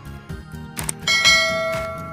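Subscribe-button animation sound effect: a short click, then about a second in a bright bell chime is struck and rings out, fading slowly.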